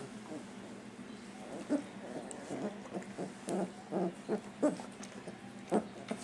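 Three-week-old puppies making a run of short, soft whimpers and grunts, about a dozen of them, starting about two seconds in.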